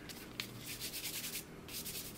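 A cotton cleaning patch rubbed over the metal parts of a Beretta 1301 Tactical shotgun, wiping them clean: faint scratchy rubbing strokes, a longer one through most of the first second and a half and a short one near the end, with a light click about half a second in.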